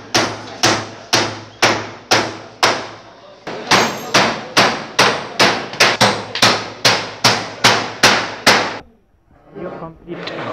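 Hammer blows on a wooden batten laid over corrugated metal sheeting, a steady run of about two strikes a second, each ringing briefly. They pause briefly about three seconds in and stop about nine seconds in.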